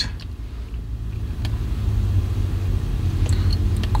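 Steady low vehicle rumble heard inside a car cabin, growing slightly louder over the few seconds, with a faint click or two.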